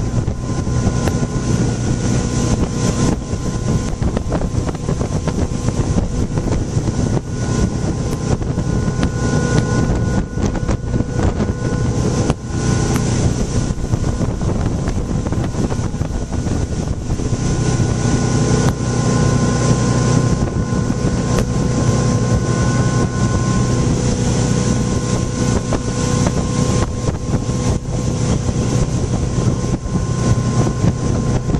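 Motorboat engine running at a steady towing speed, an unbroken drone with rushing wind buffeting the microphone over it.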